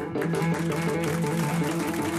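Electric guitar playing a blues riff, a figure of short low notes repeated in an even pulse, with bass underneath.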